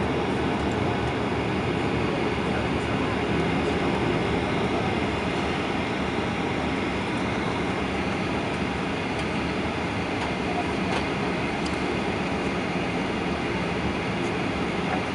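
Steady cabin noise inside a Boeing 737-800 taxiing: the CFM56-7B engines running at taxi power over a low rumble from the wheels rolling on the taxiway.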